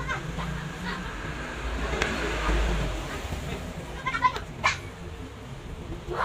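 Small clicks of steel tweezers working on a watch movement, over a steady low hum, with an animal calling in the background about four seconds in.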